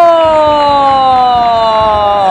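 A male football commentator holding one long, drawn-out shout of a player's name at full voice, the pitch sliding slowly down.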